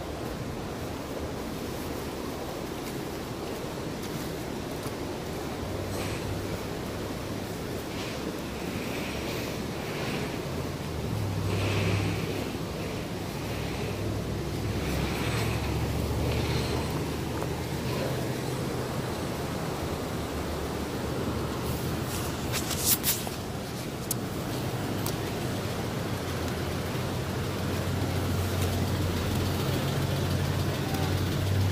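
Steady rushing noise of a river in flood, with wind on the microphone. A few sharp clicks come about 23 seconds in, and a low hum grows near the end.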